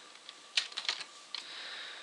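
A few keystrokes on a computer keyboard, sharp separate clicks at irregular moments, followed by a faint hiss in the last half second.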